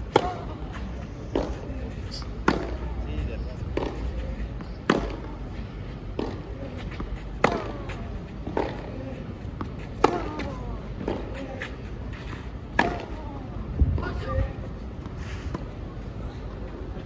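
Tennis rally on a clay court: sharp racket-on-ball strikes about every second and a quarter, alternating between a louder near hitter and a softer far one, the ball traded back and forth steadily.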